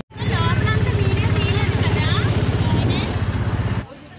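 Motorcycle engine running steadily with a pulsing beat while riding along a road, with voices talking over it. It cuts off abruptly just before the end.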